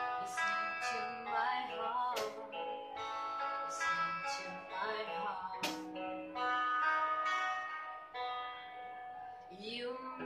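Two electric guitars playing a song together, picked notes and chords, with a woman's singing voice coming in near the end.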